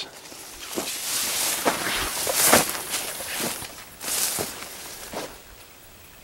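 Corn leaves rustling and brushing past as someone moves through standing corn, with footsteps; several soft swishing swells that die down near the end.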